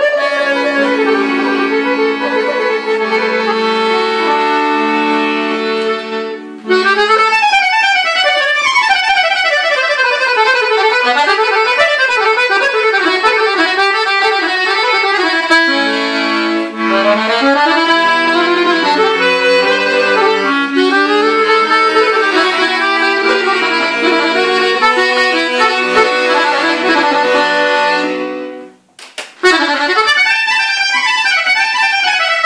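Guerrini chromatic button accordion played solo: held chords for the first few seconds, then fast runs sweeping up and down the keyboard. The playing stops briefly near the end, then starts again.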